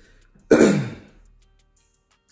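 A man clears his throat once, about half a second in, in one short burst that fades within a second.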